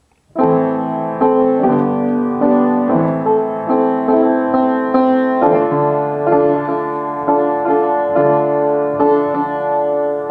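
Piano chords starting about half a second in and struck again roughly every half second: the instrumental introduction to a worship song, begun on a count-in.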